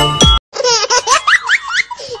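Electronic dance music with a steady beat cuts off abruptly a fraction of a second in. Then come high, rising baby giggles in quick bursts, the recorded laugh of a battery-powered light-up tumbling monkey toy.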